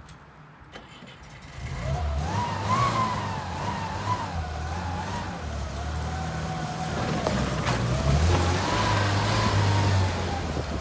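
Pinzgauer 6x6's air-cooled four-cylinder petrol engine picks up about two seconds in and drives the truck along, its note wavering up and down with a whine above it. It still stutters a little, having stood for 14 years on the same 14-year-old petrol.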